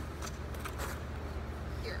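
Steady low hum of an indoor ice rink, with faint scrapes of figure-skate blades gliding on the ice.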